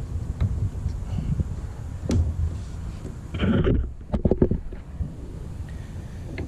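Handling noise of a wooden deck board and a decking lever tool being shifted and set on a joist: irregular knocks and scrapes over a low rumble of wind on the microphone, with a sharp click about two seconds in and a cluster of knocks around four seconds.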